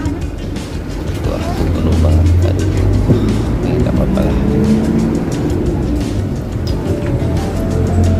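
Steady low engine drone heard from inside a city bus, with music playing and passengers' voices in the background.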